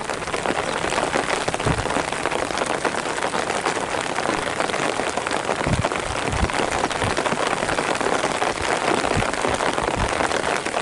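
Heavy rain falling on a surface: a steady, dense hiss of patter, with a few low thumps along the way.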